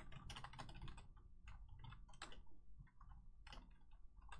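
Faint, irregular typing and clicking on a computer keyboard, several keystrokes a second.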